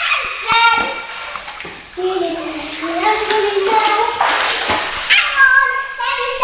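Children's voices calling out and squealing, with pool water splashing around them; a lower wavering call runs through the middle.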